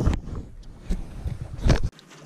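Wind buffeting an action-camera microphone on a kayak, in rumbling gusts with a loud bump at the start and a louder one near the end, then cutting off suddenly.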